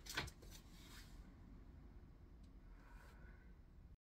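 Near silence: room tone, with a couple of faint clicks at the start.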